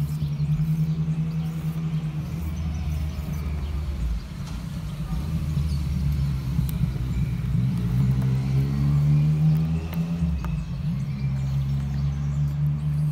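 An engine running steadily with a low hum, growing a little louder and higher for a few seconds past the middle.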